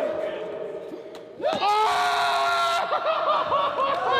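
A group of people laughing and yelling, with one loud, long, held scream starting about a second and a half in, over the laughter.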